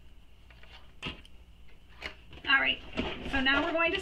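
A couple of light clicks as plastic sewing clips are handled, then a woman talking from about two and a half seconds in.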